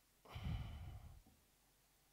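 A man sighing, one breath out into a podium microphone lasting about a second and starting a quarter second in, the breath hitting the microphone with a low rumble.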